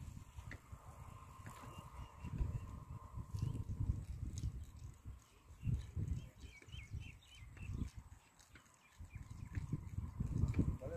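Wind buffeting the microphone in uneven low gusts, easing briefly near the end, with a few faint high chirps about seven seconds in.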